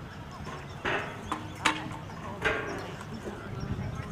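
Three sharp clacks on a hard surface, a little under a second apart, the second the loudest, over faint background voices and outdoor ambience.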